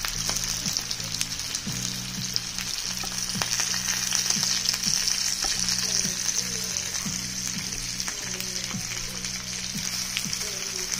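Oxtails sizzling steadily as they brown in a frying pan, with occasional light clicks of a utensil against the pan.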